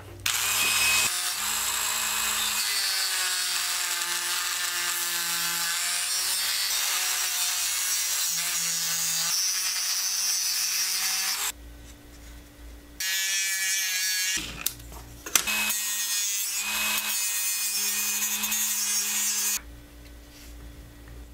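Dremel rotary tool with a cutoff wheel cutting a slot into a foil-covered wooden lure body. It runs in three spells: a long one of about eleven seconds, a short one of about a second and a half, then one of about four seconds, its pitch wavering as the wheel bites.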